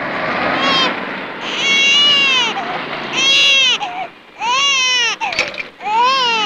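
An infant crying in about five separate high-pitched wails, each under a second long, rising and then falling in pitch.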